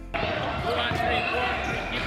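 Busy gymnasium sound: many kids' voices talking and calling over one another in an echoing hall, with basketballs bouncing on the floor. It comes in suddenly right at the start.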